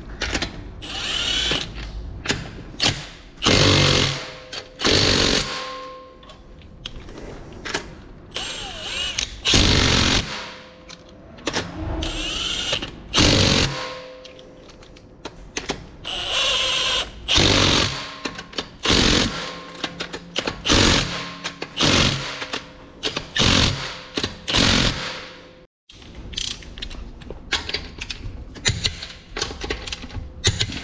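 Cordless Milwaukee M18 Fuel impact wrench running in repeated short bursts, about a dozen, as it runs lug bolts into an alloy wheel. Near the end comes a run of quick clicks from a hand wrench on the lug bolts.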